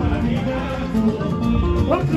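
Live band music: an instrumental stretch of sustained tones over a strong bass between sung lines, with the singer's voice coming back in near the end.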